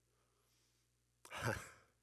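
Near silence, then a little over a second in a man's single short, breathy exhale, like a sigh, lasting about half a second.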